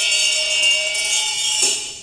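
Bright ringing metal percussion of a Taoist ritual: a struck metallic note rings on, and a fresh strike comes near the end.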